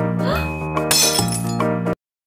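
Background music with a glassy shattering sound effect about a second in, marking a cartoon heart breaking; the music cuts off suddenly near the end.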